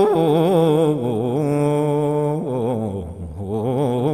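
A man chanting an Islamic devotional song alone, in long drawn-out notes with wavering, ornamented pitch. The melody sinks lower and softer about three seconds in, then rises again.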